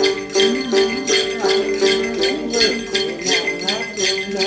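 Tày đàn tính, a long-necked two-string gourd lute, plucked in a steady repeating Then melody, with a bunch of small jingle bells (xóc nhạc) shaken in time, about three jingles a second.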